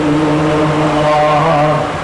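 A man's voice chanting, holding one long steady note, with a new note starting near the end.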